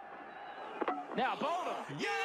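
Speech: a voice talking, starting about a second in after a quieter opening.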